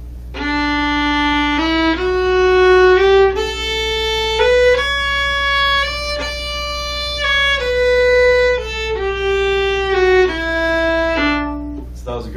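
A violin playing a one-octave D major scale, from the open D string up to the D an octave above and back down. It goes in a long-short dotted-quarter-and-eighth rhythm with the pairs slurred together.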